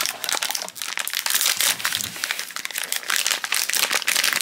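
Foil blind-box wrapper being torn open and crinkled by hands, a dense irregular crackling.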